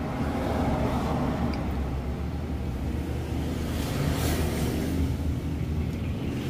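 Steady low background rumble with a faint hum and no distinct events.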